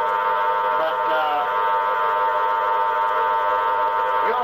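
Spiricom device's buzzing drone, a stack of many steady tones held at once, with a few short warbling pitch glides like a droning voice about a second in.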